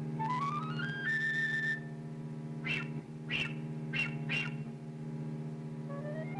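Concert flute playing fast rising runs that land on held high notes, with four short breathy accented notes in the middle, over a cello holding a steady low note.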